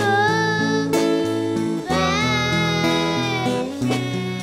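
Acoustic guitar playing under a singing voice that holds long, wavering notes of a slow melody, with a sharp hit about a second in.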